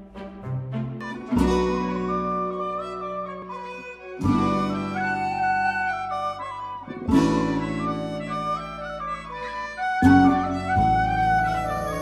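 Instrumental background music: sustained chords change about every three seconds beneath a melody that steps up and down.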